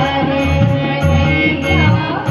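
Live Hindustani devotional song: a woman singing with harmonium and tabla accompaniment. The tabla's deep bass strokes repeat under the harmonium's steady reed tones.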